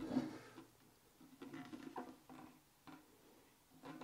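Faint, scattered small taps and scrapes from an empty glass tank being handled and tilted by hand, a few light ticks about halfway through.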